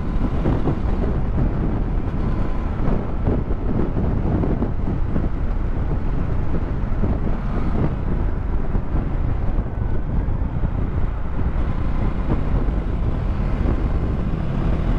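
Steady wind rumble on the microphone while riding a Dominar 400 motorcycle, with engine and road noise underneath.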